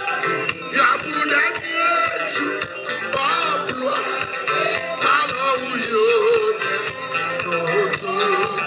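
Live gospel band playing a Haitian Creole worship song: a male lead vocalist sings with vibrato over a steady drum beat, with electric guitar, keyboard and congas.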